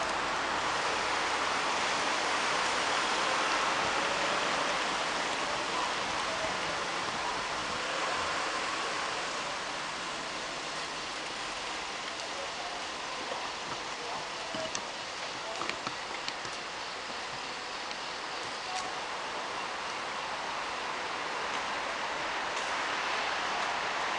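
A steady, even hiss of outdoor ambience, with a few faint clicks around the middle.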